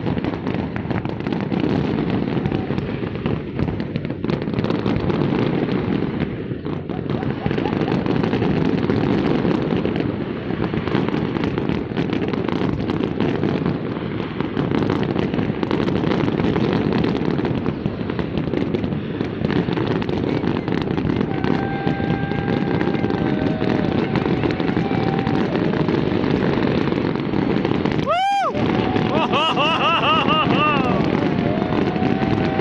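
A fireworks display going off continuously: a dense, steady rumble of distant bursts and crackle, with crowd voices mixed in. About two seconds before the end a short sharp sound cuts through.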